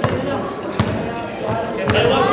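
A basketball being dribbled on a hardwood gym floor: a few slow bounces, each a sharp slap with a low thud.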